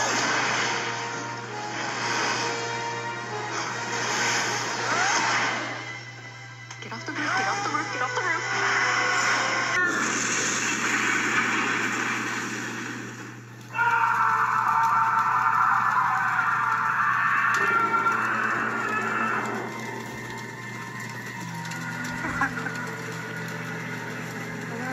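Animated film soundtrack: dramatic score mixed with sound effects, played back through a speaker with a steady low hum under it. About 14 s in, it cuts abruptly to different audio.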